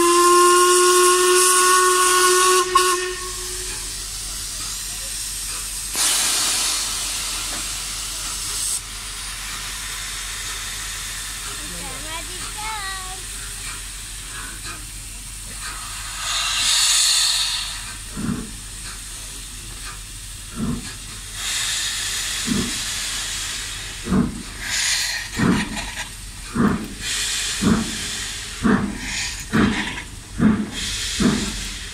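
Steam locomotive 6233 Duchess of Sutherland, an LMS Princess Coronation class Pacific, sounds one long whistle blast as it sets off. Steam hisses after that. From just past halfway, its exhaust beats start up slowly and quicken as the engine gets the train moving.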